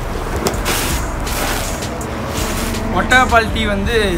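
Person slurping sips of tea from a cup: three short noisy sips in the first half, followed by speech near the end.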